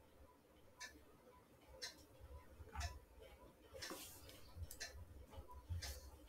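Faint regular ticking, about one tick a second, over low room noise.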